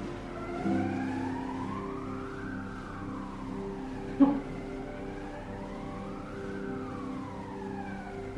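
Background music with sustained chords, over which a siren wails, its pitch rising and falling slowly about every four seconds. A single brief knock sounds a little after four seconds in.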